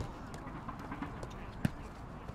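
Light footsteps and football touches on a grass pitch, with one sharp thump of a ball being struck about one and a half seconds in.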